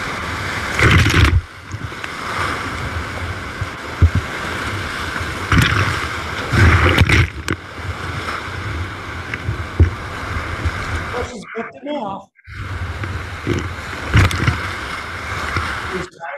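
Roar of whitewater in a big rapid from a camera riding on a tule reed raft, with waves breaking over the raft in louder surges about a second in, midway and near the end, and a brief dip shortly before the end.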